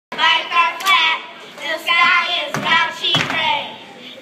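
A group of young girls' voices singing together in short rhythmic phrases, with a few sharp hand claps cutting in: once about a second in and twice more in the second half.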